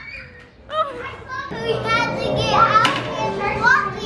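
Young children's voices calling out and chattering excitedly, several at once, with a short sharp click about three seconds in.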